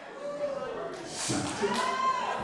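A man's wordless, drawn-out vocal moans, with no words spoken. The first slides down in pitch, and after a couple of short breathy hisses a higher one rises and falls. They mimic a mute man straining to speak.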